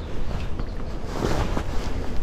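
Wind buffeting the microphone, an uneven rumbling noise with no distinct event in it.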